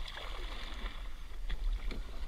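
Water sloshing against a kayak's hull on open sea, with a steady low rumble under it and two light knocks near the end.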